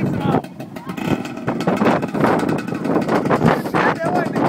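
ATV engine running under load as the four-wheeler churns through a flooded mud hole, with muddy water splashing around it.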